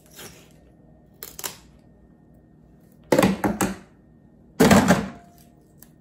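A container of chili seasoning being shaken over a pot, with short rattles: a few small clicks, then two louder bursts of shaking about three and five seconds in.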